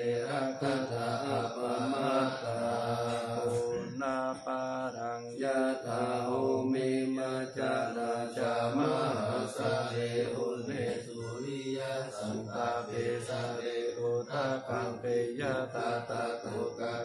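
Thai Buddhist morning chanting (tham wat chao): a group of voices reciting Pali verses in unison on a steady, held recitation tone.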